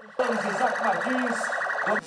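Police SUV's electronic siren sounding a rapid, pulsing warble. It starts abruptly a moment in and cuts off sharply near the end.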